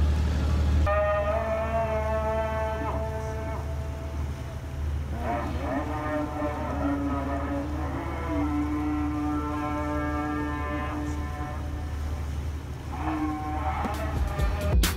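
A distant voice chanting long, drawn-out notes that shift in pitch, over the low steady hum of a river boat's engine.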